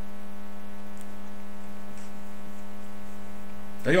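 A steady, unwavering hum at one low pitch with a stack of even overtones, which stops as speech resumes near the end.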